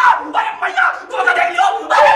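Several young men yelling and shouting together, one voice high and strained.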